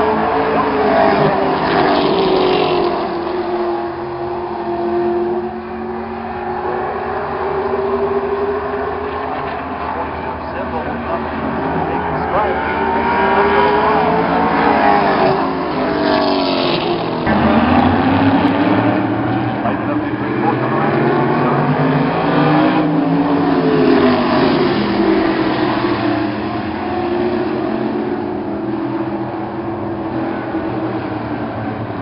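A pack of short-track stock cars racing around the oval. Their engines overlap, each note rising and falling in pitch as the cars accelerate off the turns, lift and pass by.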